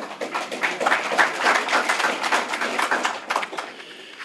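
Audience applauding, a dense run of handclaps that thins out near the end.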